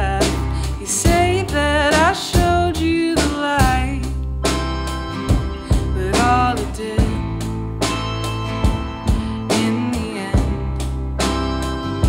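Live band playing a song: acoustic guitars, electric bass, drum kit and keyboard, with a steady drum beat under a wavering sung melody line.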